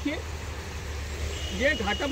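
Steady low outdoor rumble with a faint hiss between a man's short words. A thin, steady high tone comes in a little past halfway.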